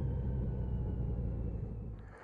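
Motorcycle engine running steadily at low revs, its level easing slightly toward the end.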